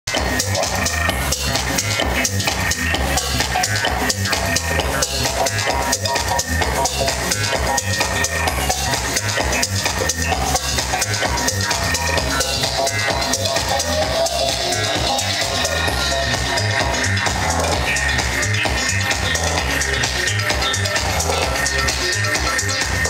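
Electronic dance music from a live DJ set, played loud through the sound system, with a steady kick drum about two beats a second over a heavy bass line.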